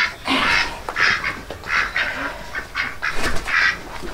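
Domestic ducks calling: a rapid, irregular run of short, raspy quacks.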